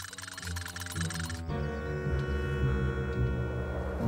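Cartoon background music with held notes: a high shimmer stops about one and a half seconds in, leaving low sustained chords.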